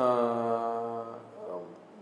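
A man's voice holding one long, level-pitched hesitation vowel, a drawn-out "aaa", for about a second before it fades, then a short murmur.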